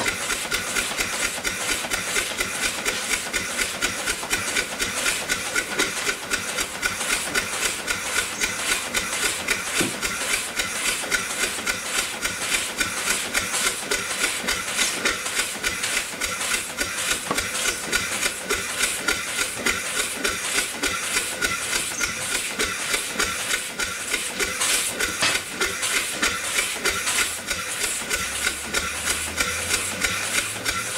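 A 10-horsepower steam engine running under steam, its exhaust beating in a fast, even rhythm over a steady hiss of escaping steam, some of it from a leak.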